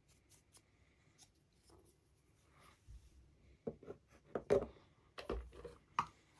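Faint scratching of a dry brush on a 3D-printed model part, then a run of sharp knocks and clatter in the second half as the painted parts are put down and handled on a cutting mat.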